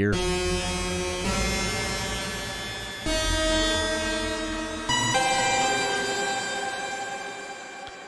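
Arturia Pigments software synth patch of detuned unison saw waves, run through comb filtering, a pitch-shifting delay and a shimmer reverb, played as a dense, dissonant held chord. The chord shifts to new notes about a second, three seconds and five seconds in, and the last one fades away near the end.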